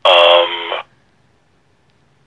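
A person's voice over a telephone line: one held, drawn-out vocal sound, like a hesitant 'uhh', lasting under a second.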